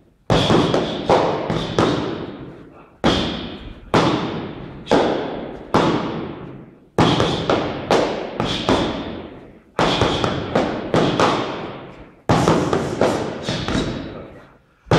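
Repeated thuds of boxing gloves and foam training sticks striking each other during a Muay Thai pad-and-stick drill, coming in quick runs of three to five hits with short gaps between. Each hit rings on in an echoing room.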